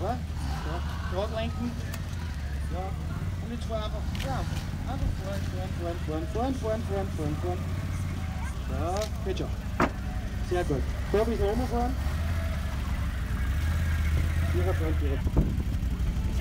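A quad (ATV) engine running at low, steady revs as it creeps up and over a seesaw ramp, with one sharp knock about ten seconds in.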